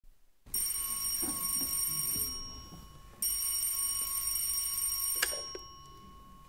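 Telephone ringing twice, each ring lasting about two seconds with a short gap between; the second ring is cut off by a click near the end.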